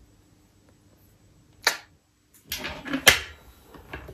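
Near silence, broken a little under halfway through by one short sharp knock. Then comes a quick flurry of knocks and rustles as things are handled on a desk.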